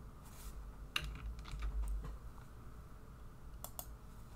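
A few scattered computer keyboard keystrokes and clicks, typical of copying and pasting a line of code, with a close pair near the end, over a faint low rumble.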